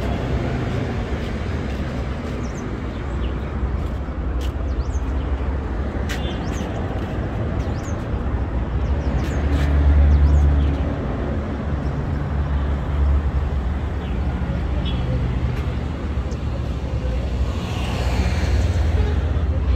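City street ambience: a steady low traffic rumble that swells louder about ten seconds in, with faint voices and scattered small clicks.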